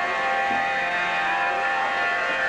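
Harmonium holding steady, sustained notes as accompaniment to devotional bhajan singing.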